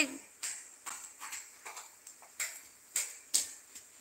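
A handful of soft, irregular clicks and taps, about eight in four seconds, over quiet room tone.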